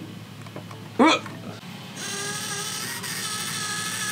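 Small geared DC motor starting about two seconds in and running steadily with a whine, turning the roller that drives the slider head along its aluminium rail.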